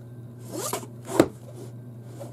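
A collage-covered box handled and turned over on a table: a brief scrape as it slides, then one sharp knock as it is set down just after a second in.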